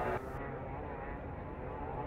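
Outboard engines of racing powerboats running flat out, heard as a faint, steady drone.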